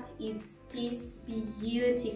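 Background music with a sung vocal line.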